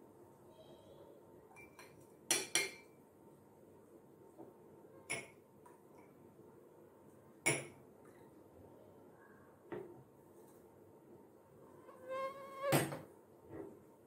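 Glass tumblers and a steel tumbler clinking and knocking as they are handled and set down on a tabletop. A few sharp knocks are spread out, with a louder cluster of ringing clinks near the end.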